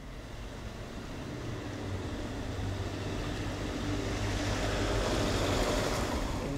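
A road vehicle approaching on the street, its engine and tyre noise swelling gradually and steadily louder.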